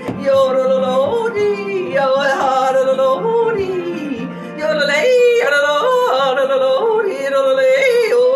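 A woman yodeling without words, her voice jumping quickly and repeatedly up and down in pitch.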